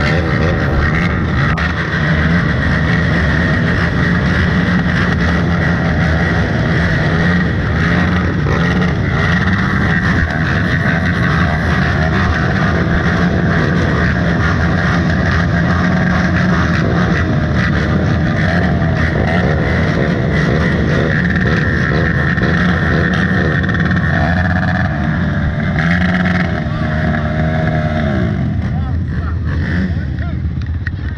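Several four-wheeler (ATV) engines idling steadily together. Near the end one engine's pitch briefly rises and falls, as if it is being revved.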